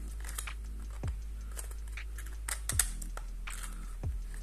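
Paperboard box and its cardboard insert being handled: scattered soft taps, scrapes and rustles of the packaging, with a few sharper clicks past the midpoint, over a steady low hum.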